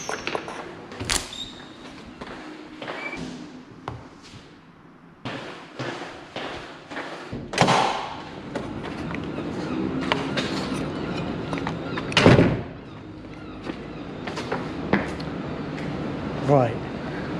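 Wooden swing fire doors being pushed open and knocking shut: a series of knocks and thuds over movement noise, the loudest about three-quarters of the way through.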